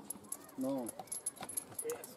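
A hand rummaging in a small bag of draw lots, making a run of light clicks and rattles as a peg number is drawn.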